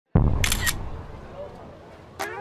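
A sudden deep boom that fades away over the next second and a half, with a brief high-pitched clicking burst about half a second in.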